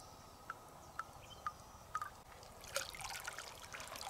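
River water splashing and trickling as a freshwater mussel shell is dipped and rinsed at the water's edge, starting about two-thirds of the way in. Before that, faint short high notes repeat about twice a second.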